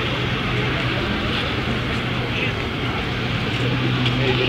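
Street traffic noise: a steady low vehicle engine hum under the chatter of a crowd out on the street.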